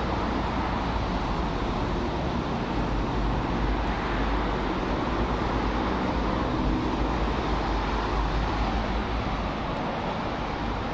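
Steady road traffic: a continuous rumble of engines and tyres from passing cars and buses on a busy city road, with no single vehicle standing out.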